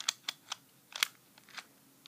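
Short, sharp plastic clicks and taps, about eight spread unevenly over two seconds, from handling a Trackmaster Thomas toy engine as its body is being fitted back on over the battery.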